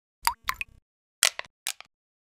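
Cartoon water-drop sound effects for an animated logo: a run of short plops and pops, one with a quick falling pitch, in two quick clusters about a second apart with silence between.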